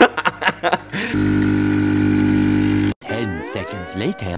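Ariete espresso machine's pump buzzing steadily for about two seconds while the shot runs into the glass, cut off abruptly just before the end. A short rising voice-like sound follows.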